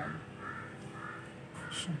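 A bird calling in the background: a series of about four short, harsh calls, roughly half a second apart.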